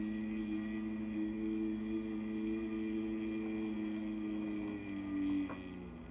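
A sustained musical drone of several steady low tones, wavering slowly in strength, that dies away near the end with a faint click.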